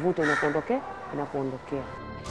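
Only speech: a woman talking in Swahili.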